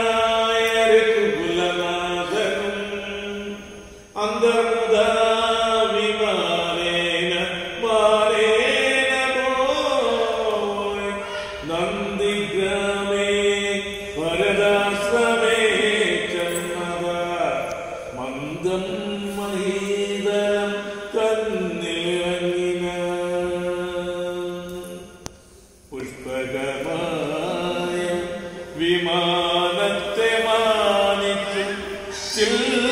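A man chanting Hindu mantras in a sing-song recitation, holding and gliding between notes in long phrases. He pauses for breath briefly about four seconds in and again a few seconds before the end.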